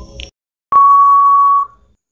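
Quiz countdown-timer sound effect: the tail of a last short tick, then one steady beep about a second long that marks time up.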